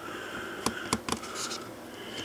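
Three light clicks about a second in, from a fine pencil and a guitar nut being handled on a rubber bench mat, over faint room tone.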